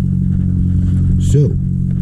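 Steady low mechanical hum of a running motor, holding one pitch throughout.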